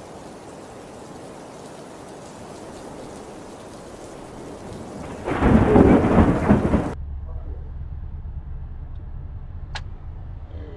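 Steady hiss of rain on a stormy beach, then about five seconds in a sudden, loud, deep thunderclap that rumbles for nearly two seconds and is cut off abruptly. After the cut comes a quieter steady low hum with a single click near the end.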